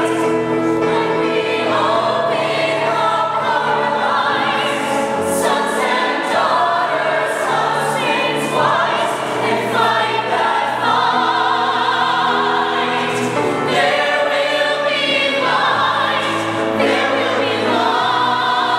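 Mixed-voice show choir singing a musical-theatre number in harmony, holding sustained chords that change every second or so.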